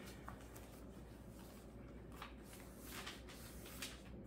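Pages of a spiral-bound hymnal being turned and pressed flat on a piano's music stand: faint paper rustles, a few of them in the second half.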